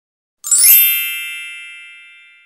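Logo-intro chime sound effect: a bright chime struck about half a second in, ringing on as one chord that fades slowly away.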